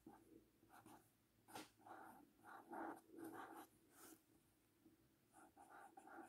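Felt-tip pen writing on a sticky-note pad: a faint series of short strokes across the paper with brief pauses between letters.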